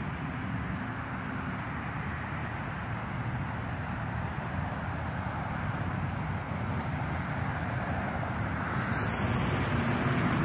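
Steady low rumble of vehicle engines and road traffic, growing louder near the end.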